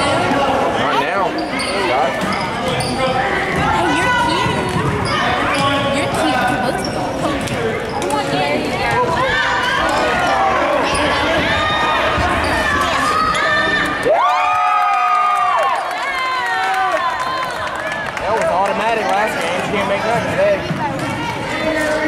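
A basketball bounces on a hardwood gym floor during play, amid constant overlapping chatter and shouts from players and spectators. About fourteen seconds in, a loud held tone of about a second and a half stands out above the crowd.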